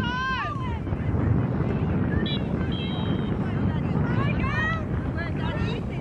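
Raised voices of players and sideline spectators shouting and calling during a soccer match, over a steady low rumble of wind on the microphone.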